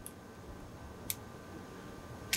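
Faint, sharp clicks of small parts on a 1/6 scale model rifle as a miniature red dot sight is pushed onto its rail mount, two clicks about a second apart.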